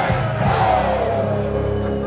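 Live band music from the stage, steady bass notes under it, with crowd voices shouting and singing along.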